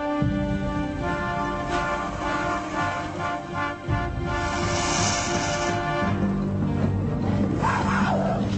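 Background soundtrack music of sustained held chords, changing about a second in and again about six seconds in, with a brief sliding sound near the end.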